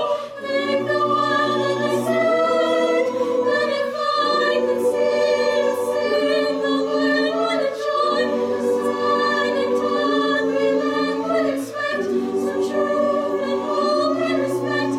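Mixed-voice chamber choir singing held chords in several parts. The harmony shifts every second or two, with short breaks between phrases.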